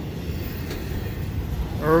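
Double-stack intermodal freight train rolling past at close range: a steady low rumble of wheels on rail, with no flange squeal.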